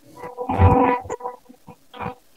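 A brief garbled sound coming through a poor phone connection, about half a second long, followed by small broken crackles over a faint steady line tone.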